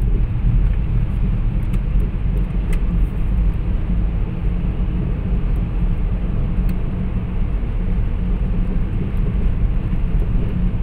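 Steady low rumble of road and engine noise heard from inside a moving car.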